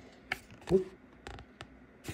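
Faint rustling and a few light clicks of trading cards being handled in the hands, as a code card and a stack of Pokémon cards are shifted and sorted.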